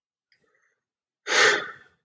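Silence for about a second, then a single audible breath lasting about half a second, like a sigh or an intake of breath.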